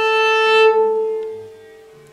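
Cello A string bowed as a natural harmonic, lightly touched at its midpoint, sounding one clear, steady A an octave above the open string: the first harmonic. The bow stops about two-thirds of a second in and the note rings away.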